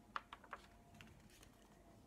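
A picture-book page being turned by hand: a few faint, short paper ticks and clicks in the first second, then near silence.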